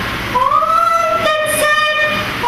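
A high singing voice holding long notes. After a brief break it slides up into a sustained note, then moves to another held note just past a second in.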